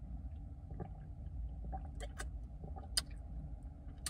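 A man drinking from a plastic sports-drink bottle, with faint swallowing and a few short clicks from lips and bottle about two and three seconds in, over the low steady rumble of a car cabin.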